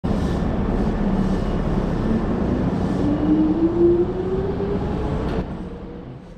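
Hankyu 5300-series electric train pulling out of the platform: wheels and body rumbling, with a motor whine that rises steadily in pitch as it picks up speed. The sound fades away near the end as the train leaves.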